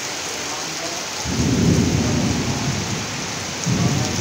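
Heavy rain falling steadily on paving, an even hiss. About a second in a low rumble comes in suddenly and lasts nearly two seconds, and another begins near the end.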